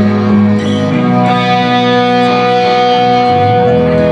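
Live rock band playing an instrumental passage, guitars ringing out on held chords. The low end falls away about a second in and comes back near the end.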